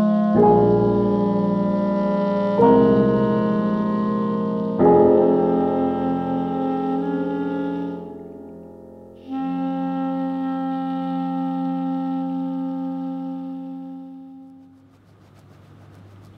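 Slow instrumental film score with piano: sustained chords, a new one every two seconds or so. It dips near the middle, returns with a long held chord and fades out about a second before the end.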